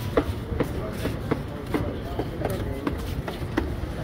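Footsteps on a paved street, short sharp steps about two to three a second, over a steady low street rumble with voices in the background.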